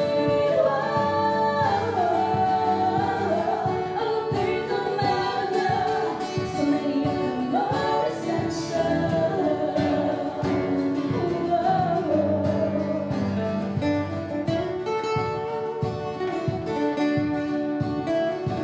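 Live acoustic rock: two female voices singing together over two strummed acoustic guitars.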